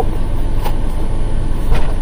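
Steady low rumble of a semi truck idling, heard from inside the cab, with a faint knock a little under a second in.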